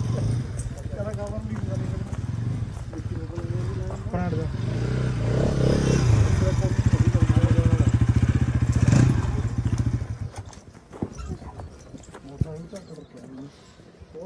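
Motorcycle engine running close by with a steady low drone, growing louder between about five and nine seconds in, then dropping away sharply about ten seconds in.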